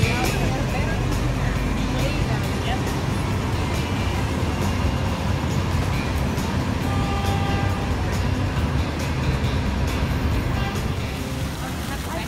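Steady city street traffic noise from cars and buses, with a background of people's voices.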